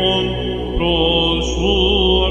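Byzantine chant: a male cantor's solo voice holds one note, breaks off briefly, then takes up a new note just under a second in and starts to move through a melismatic turn. Under it runs a steady electronic ison drone.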